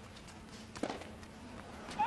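Tennis rally on an indoor hard court: one sharp pop of the ball off a racket about a second in, with faint footsteps of players moving on the court.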